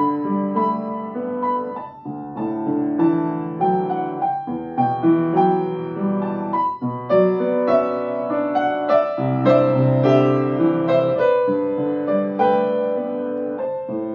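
Upright piano played solo: a steady stream of chords with a melody over a moving bass line.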